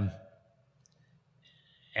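A man's drawn-out 'uh' trailing off in the first moment, then a quiet pause with a few faint mouth clicks.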